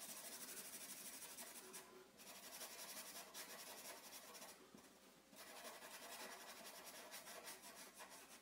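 Black felt-tip marker scribbling faintly on paper as it fills in a solid black shape, with brief pauses about two seconds in and around five seconds in.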